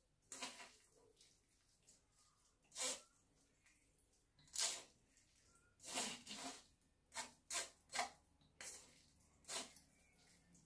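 A metal spoon scraping and pressing soaked chopped okra against a stainless-steel mesh sieve to strain out its liquid: about ten short, irregular scrapes.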